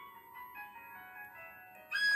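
Quiet background music: a soft melody of held notes, turning suddenly louder at the very end.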